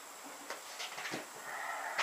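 Faint handling noise up close to the microphone: a few small clicks, then a soft breathy rustle toward the end as a person moves right up to the camera.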